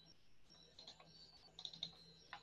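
Faint computer keyboard typing: a quick run of key clicks in the second half, over near silence.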